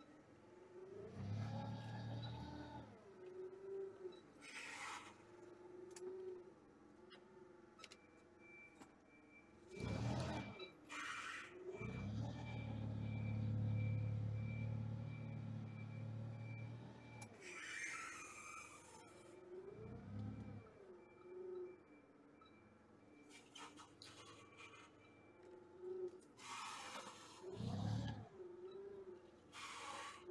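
Toyota 7FGCU18 forklift's propane-fuelled four-cylinder engine running as the truck drives around, with the engine rising in two surges, the longer one at about 12 to 17 seconds. A faint high-pitched beeping runs through the middle, and a few short sharp noises come and go.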